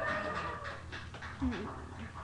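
Indistinct speech with a short, louder vocal sound about one and a half seconds in.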